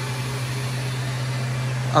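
Steady low machinery hum, even in level, with nothing else happening.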